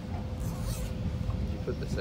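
Low rumble of a moving passenger train heard from inside the carriage, with a steady hum over it.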